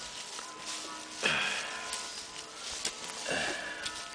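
Plastic bag crinkling as it is untied and pulled off a bunch of radishes, loudest for about half a second just over a second in. A brief murmur from a voice comes near the end.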